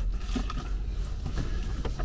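Cardboard box being handled and turned over, with a sharp click at the start and light scrapes and taps of the cardboard, over a low steady rumble.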